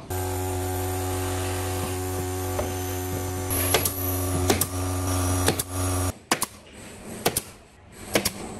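A handheld power tool's electric motor runs at a steady pitch for about six seconds, then cuts off suddenly. Sharp knocks and clicks follow near the end.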